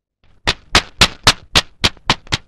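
A run of sharp, bright clicks coming almost four a second, starting about half a second in after near silence, part of a film soundtrack between songs.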